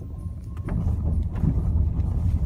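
Low, steady rumble of a car driving on a rough rock road, heard from inside the car, with a few faint knocks.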